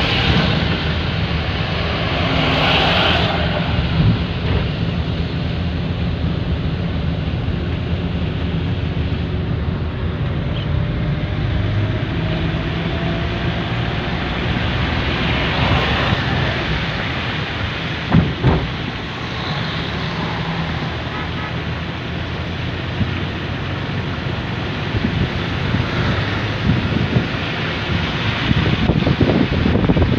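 Car driving on a wet road, heard from inside: steady road and tyre noise with wind buffeting the microphone. The engine note rises slowly as the car picks up speed over the first several seconds, and there is a single thump about two thirds of the way through.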